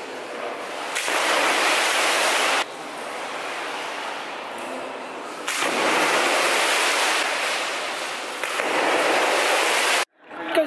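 Steady rushing and splashing of pool water, its level jumping up and down abruptly several times.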